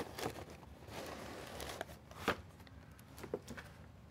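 Cardboard card tray and box contents of a board game being handled and pressed into place: a few soft taps and clicks with faint rustling, the loudest tap a little after two seconds in.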